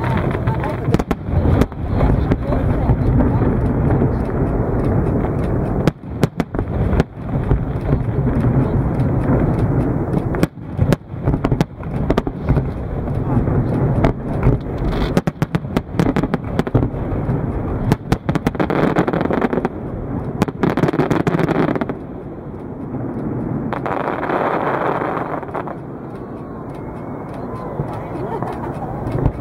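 Aerial fireworks display: shell bursts banging in quick succession over a continuous low rumble, thinning out and quieter in the last few seconds.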